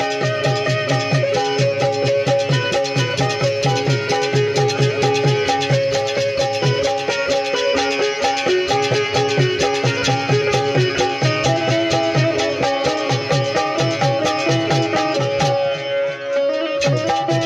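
Live Pothwari folk ensemble playing an instrumental passage: held harmonium notes and a plucked string instrument over a fast, steady hand-drum beat. The drumming breaks off near the end.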